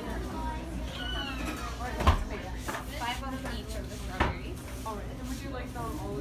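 Indistinct background voices over a low steady hum, with two sharp knocks, one about two seconds in and another about two seconds later.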